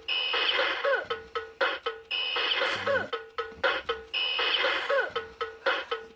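Vintage battery-operated gorilla drummer alarm clock toy going off: quick drumbeats over a steady tone, with a bright ringing crash about every two seconds.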